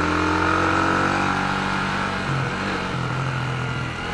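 Yamaha YB125SP's 125 cc single-cylinder four-stroke engine running at a steady road speed under the rider, its pitch easing slightly lower over the few seconds.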